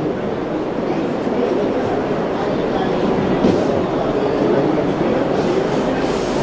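Indistinct babble of many people talking at once in a large hall, a steady murmur with no single voice standing out.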